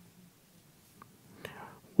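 Near silence in a speaker's pause, with a tiny click about a second in and a soft breath about a second and a half in; a man's voice starts again right at the end.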